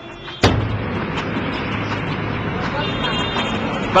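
Street traffic noise: vehicle engines and road noise with a steady low hum, starting abruptly about half a second in.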